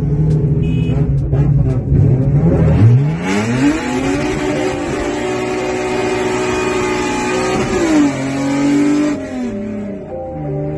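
3.5-litre V6 car engine heard from inside the cabin under hard acceleration. It drones low and steady at first. About three seconds in the note climbs sharply and holds high, then drops away near the end.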